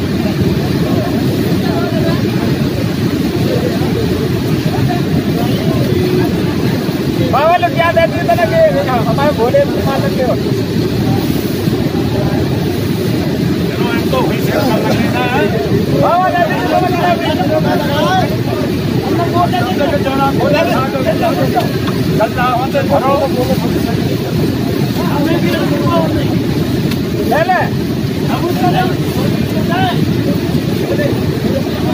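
Steady low rushing of the fast-flowing Bhagirathi river, loud throughout, with men's voices talking over it at times from about seven seconds in.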